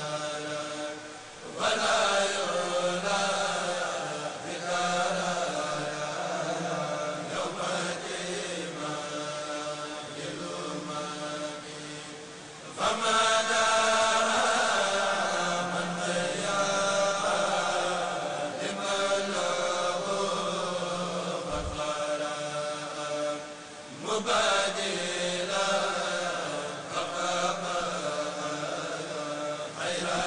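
A group of men chanting religious verses in unison into microphones, in long held phrases. Brief pauses come about a second and a half in, near the middle and about three-quarters through, each followed by a louder new phrase.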